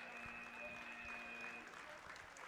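Match-end buzzer of the robotics field's timer: a steady electronic tone that sounds for about a second and a half, then cuts off, over faint crowd applause.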